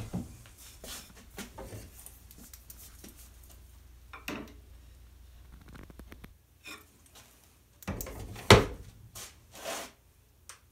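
Low steady hum of a wood lathe running, with light knocks and rubbing of a metal turning tool against the tool rest and workpiece. The hum cuts off about six seconds in, then come a few scattered knocks, the loudest a sharp knock about two seconds later, and a short scrape near the end.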